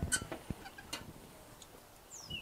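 Steel lid of an Oklahoma Joe Highland offset smoker being closed onto the cooking chamber: a few light metallic clicks and knocks. The loudest come at the start and about half a second in.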